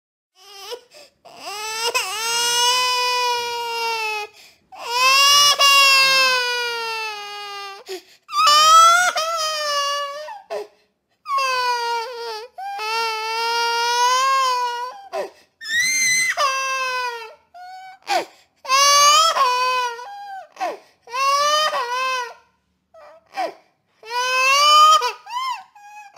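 A baby crying hard in a run of high-pitched cries with short gasps between them. The cries are long, two to three seconds each, at first, then become shorter and more broken about halfway through.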